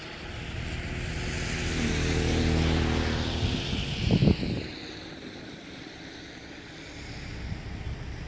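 A motor vehicle passing, its engine hum swelling and then fading over the first three or four seconds. A brief sharp sound about four seconds in, then a quieter steady outdoor background.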